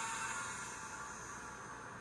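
Electric motor and propeller of an F5J electric-launch glider running at climb power, a steady whine that slowly fades as the glider climbs away. It is heard as video playback through room speakers.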